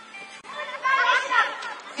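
A voice calling out loudly over quiet background music, starting about half a second in.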